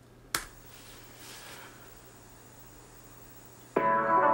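A single sharp click about a third of a second in, then faint room hiss. Music starts abruptly near the end.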